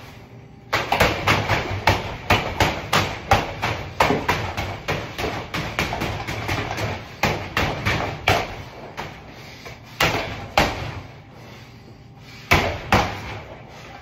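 Boxing-gloved punches landing on a hanging heavy bag: a rapid run of several hard strikes a second starting just under a second in, then a few spaced single blows, with a short pause before two more near the end.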